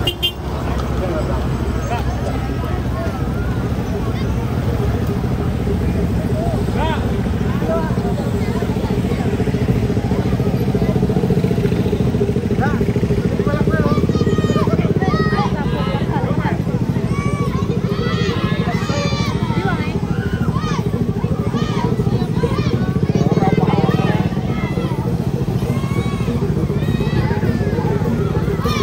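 Small motorcycle engines running steadily at low speed, crawling alongside a street crowd, with many people's voices calling and talking over them.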